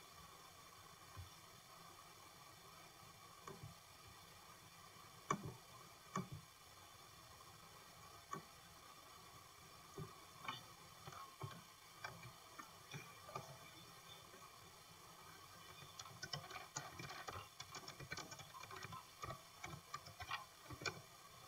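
Quiet computer desk sounds: a few scattered mouse clicks, then a quick, dense run of keyboard keystrokes near the end as a new search query is typed, over a faint steady hum.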